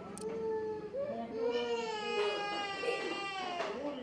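A young child crying: one long, wavering wail after a few shorter whimpers.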